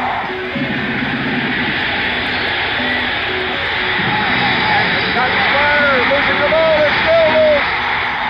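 Stadium crowd cheering and yelling, with single shouts rising and falling above the din, growing louder in the second half; the home crowd is reacting to an Arkansas fumble recovery.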